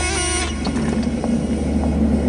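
Steady tones of background music stop about half a second in, leaving a low, steady rumbling drone.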